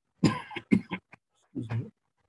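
A man coughing several times in quick succession, in short, sharp bursts.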